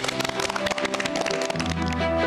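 A group of children clapping their hands in rapid applause over background music. The clapping thins out about a second and a half in, as the music comes in fuller with a deep bass.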